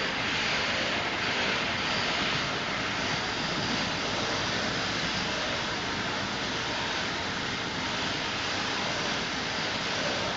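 Sheep-shearing handpiece, driven by an overhead shearing motor, running steadily as its cutter slides back and forth over the comb, cutting through a sheep's fleece.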